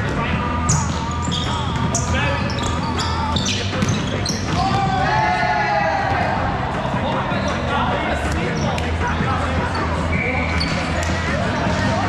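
Indoor volleyball rally in a large echoing hall: the ball being struck and hitting the court, sneakers squeaking on the sport-court floor, and players calling out, with one long shout about five seconds in.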